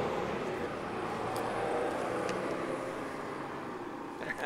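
Winnipeg Transit bus driving past, a steady engine and road noise that slowly fades toward the end.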